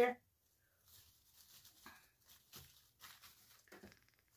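The last of a spoken word, then faint scattered rustles and small clicks of artificial wreath greenery and a silk poinsettia stem being pushed into place.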